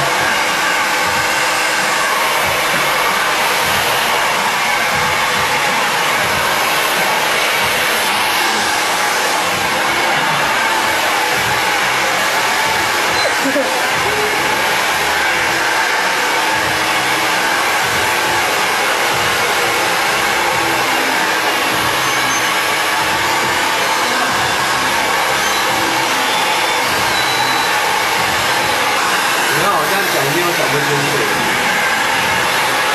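Handheld hair dryer blowing steadily while hair is brush-styled.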